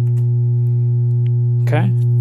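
Doepfer A111-1 VCO putting out a steady, low sine-wave tone. It is not yet frequency-modulated: the modulating sine is patched into CV2 but its level is still turned down.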